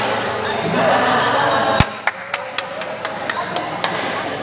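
Badminton rally with voices in the hall, then a single sharp smack, most likely a racket hitting the shuttlecock, a little under two seconds in. A quick run of light clicks and taps follows.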